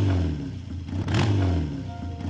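Motorcycle engine revved twice, the pitch rising with each blip: once at the start and again about a second in.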